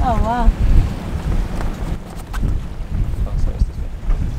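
Wind buffeting the microphone on an open deck, a steady low rumble, with a brief voice sound at the very start.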